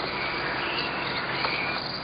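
Steady background noise from an old film soundtrack: a low hum and hiss under a faint, high insect chirring.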